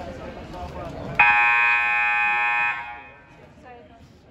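Gym scoreboard buzzer sounding once, a steady loud tone that starts abruptly about a second in and stops about a second and a half later, calling the teams out of their huddles. Crowd and player chatter in the gym before and after it.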